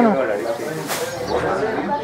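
Mostly speech: the end of a spoken word, then voices talking indistinctly in the background, with a short sharp hiss about a second in.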